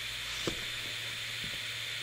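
Steady background hiss with a low, even hum, and one light tap about half a second in.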